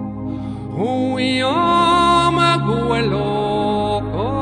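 Slow music with a vocal line: long held notes that each slide up into pitch, with new notes entering about a second in and again near the end.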